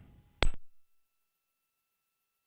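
A single sharp click about half a second in, after which the audio cuts out to near silence, leaving only a faint, thin steady tone.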